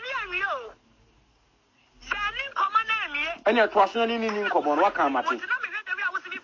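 Speech only: a person talking, with a pause of about a second near the start, then talking again.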